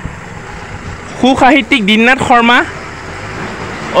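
A voice speaks for about a second and a half in the middle, over a steady low background rumble.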